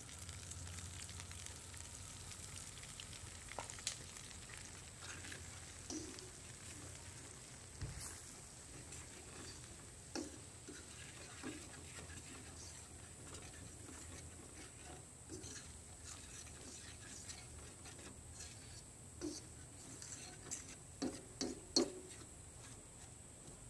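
Flour frying in hot oil and pan drippings in a steel skillet, a faint sizzle, while a metal spoon stirs and scrapes it. Light clicks of the spoon against the pan come at scattered moments, with a quick run of louder clicks near the end, as the roux for gravy is worked together.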